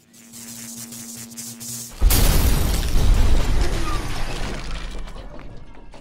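Intro sting with sound effects: a short musical lead-in holding a steady tone, then about two seconds in a sudden loud boom with breaking glass that slowly dies away.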